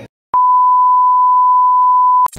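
A loud, steady 1 kHz test-tone beep, the tone that goes with TV colour bars, added in editing. It starts about a third of a second in after a moment of dead silence and holds one unchanging pitch.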